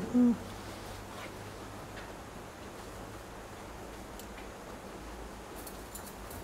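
A short, low hum-like vocal sound right at the start, then quiet room tone with a few faint clicks from bonsai shears snipping yew shoots.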